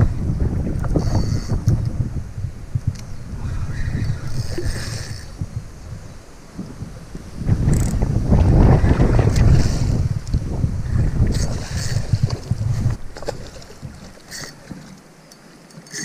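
Wind buffeting the microphone in heavy low rumbling gusts: two long surges, the second louder, dying away near the end.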